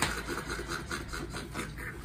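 Laughter: a run of quick breathy pulses, about five a second.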